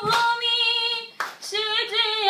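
A woman singing a Bengali song unaccompanied, holding long notes, with a short breath a little past the middle. Hand claps keep time about once a second.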